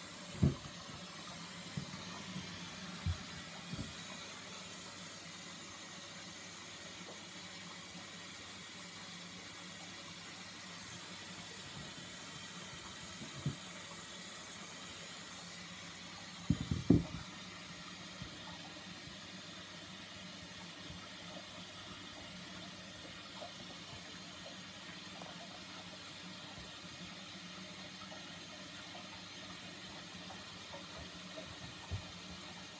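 Water filling the drum of a Bendix 7148 washing machine, a steady rush of inflow. A few brief knocks sound over it, the loudest cluster a little past halfway.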